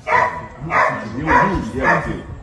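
A dog barking four times in a steady rhythm, about one bark every half second or so.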